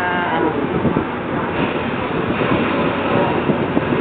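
Steady noise on board a ship: its engine and wind on the microphone, with faint wavering sounds under it.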